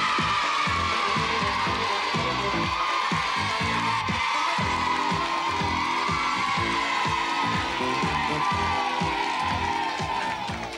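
Upbeat 1980s children's TV theme music with a steady beat, with a studio audience of children cheering over it.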